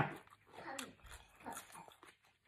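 Faint wet chewing and mouth sounds of a person eating soft marinated seafood with the lips closed, with two soft short hums, about half a second and a second and a half in.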